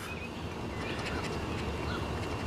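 A token scratching the coating off a scratch-off lottery ticket, quiet over a steady background hiss.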